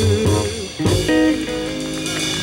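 Live jazz band playing: a hollow-body archtop electric guitar plays a short phrase of single plucked notes over a bass line. A held note with vibrato dies away in the first half second.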